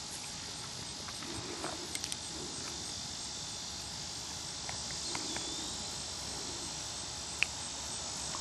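Steady, high-pitched chorus of insects chirping, with a few faint ticks over it.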